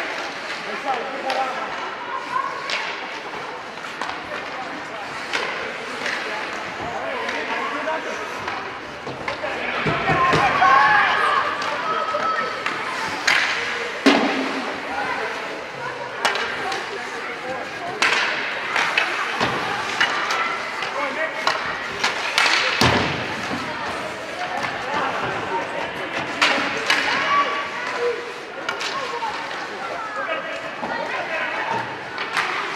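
Ice rink crowd during a youth hockey game: spectators' voices and calls carry throughout, loudest about ten seconds in. Several sharp knocks of sticks, puck and boards cut through, around the middle of the stretch and again a little later.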